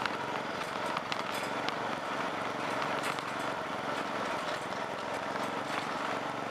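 Murray riding lawn mower's engine running steadily as it tows a flatbed trailer, with the wire dog kennel on the trailer rattling in scattered clicks.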